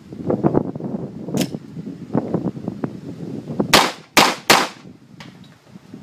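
Fort-12G 9 mm P.A.K. gas pistol firing: one sharp shot about a second and a half in, then three louder shots in quick succession near the middle.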